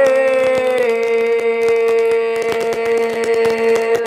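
A singer holding one long, steady note in a Tày-Nùng heo phửn folk song. The pitch dips slightly at the start and the note ends near the close.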